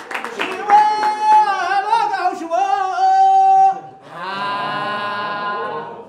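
A voice singing a slow, ornamented melody with wavering pitch and long held notes. After a short break about four seconds in, a softer held phrase follows.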